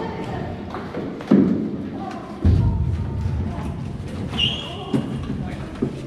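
Thuds of people stepping into and shifting about a metal tour boat: two heavy thumps, about one and two and a half seconds in, over crowd chatter.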